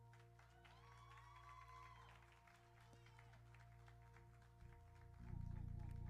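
Faint sustained music: low held chords, with a brief faint voice about a second in. A louder, deeper chord swells in about five seconds in.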